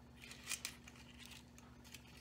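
Paper muffin cups crinkling briefly as fudge squares are pressed into them on a plate, a short rustle about half a second in, over a faint steady hum.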